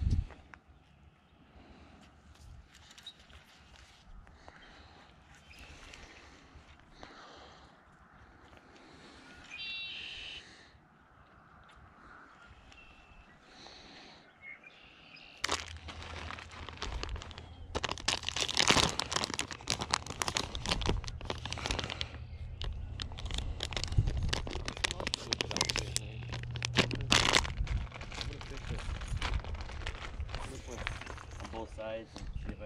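Quiet open-air ambience with a few faint bird chirps. About halfway through it turns louder, with steady wind rumble on the microphone and rustling, crinkling handling noise from a plastic bait package.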